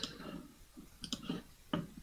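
A few soft clicks of computer controls about a second in, over quiet room tone.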